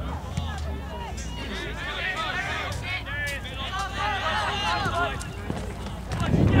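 Overlapping distant voices of players and spectators calling and shouting across an outdoor soccer field, over a steady low rumble.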